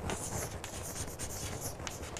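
Chalk writing on a green chalkboard: a run of short, faint strokes as a word is written out letter by letter.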